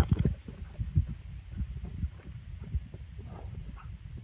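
Horse's hooves thudding irregularly on the ground as it steps between round hay bales, the heaviest thuds at the start and about a second in.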